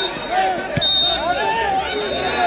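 Players and spectators shouting across a football pitch, with a dull thud a little under a second in and a short, shrill referee's whistle blast right after it, following a briefer blast at the start.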